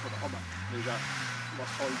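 Volkswagen Golf II rally car's engine running at a distance, its note sagging and then climbing again as the driver comes back on the throttle about a second in, with spectators talking.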